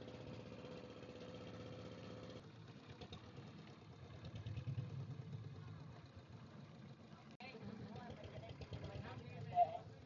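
Boat engine running steadily, with an abrupt change about two seconds in to a lower, rougher rumble. Voices talk faintly near the end.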